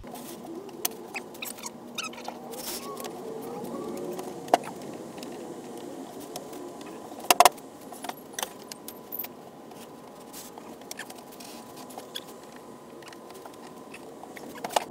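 Wooden cabinet-door parts knocking and sliding on a worktable as a door frame's rails, stiles and panel are dry-fitted together. There are scattered light clicks and a few sharper knocks, loudest about seven and a half seconds in, over a steady background hum.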